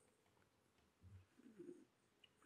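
Near silence: room tone in a pause between a speaker's words, with two very faint low murmurs about a second in and a little later.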